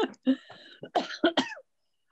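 A person coughing: a few short bursts about a second in, heard over a video-call connection.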